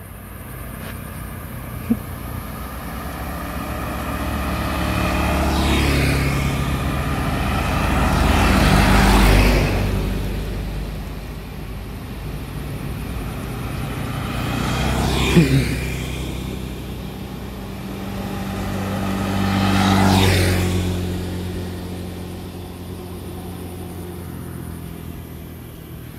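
Motor scooters and other road traffic driving past one after another, each pass swelling and then fading away. There are four passes, and the engine pitch drops sharply as one scooter goes by close, about halfway through.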